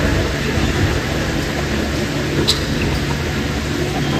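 Steady hum and rush of large air coolers running in an indoor gym, with a faint short squeak about two and a half seconds in.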